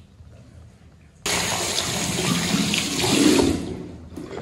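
Bathroom basin mixer tap turned on about a second in, water running hard into the sink for a couple of seconds, then tailing off near the end while face wash is rinsed.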